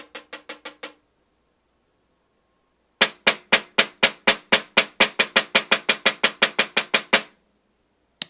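Black Swamp 5x14 snare drum with its stock Evans head, untuned from the box, struck with a stick in a steady run of even strokes. A quieter run stops about a second in; after a two-second pause a louder run of about six strokes a second plays for about four seconds.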